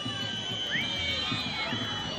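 Spectators whistling: several high whistles at once, some held steady and some sliding in pitch, over a low murmur of crowd voices.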